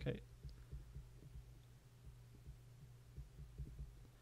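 Soft, irregular low taps of a stylus writing on a drawing tablet, over a faint steady low hum.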